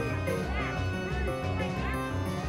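Background music with a steady beat, over which a small dog yips twice, about half a second in and again near the end.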